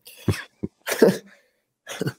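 A person's short, breathy vocal bursts, three of them spaced about two-thirds of a second apart.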